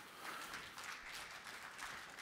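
Audience applauding, faint, as a dense patter of many hands clapping.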